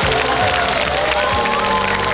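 Audience applauding and cheering over a live band's final held chord at the end of a song.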